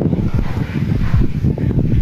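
Wind buffeting the microphone: a loud, gusty low rumble.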